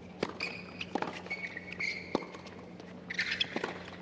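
Tennis rally on a hard court: sharp strikes of racquet on ball about a second apart, with brief high squeaks of tennis shoes on the court between them.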